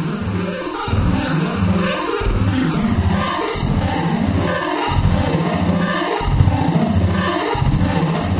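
Studiologic Sledge virtual-analog synthesizer playing a repeating pattern of pulsing low bass notes, about one and a half a second. Its tone shifts as the panel knobs are turned, growing brighter and noisier near the end.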